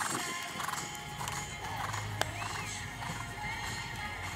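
Background music plays while a horse's hooves beat on the grass as it canters. There is one sharp click about two seconds in.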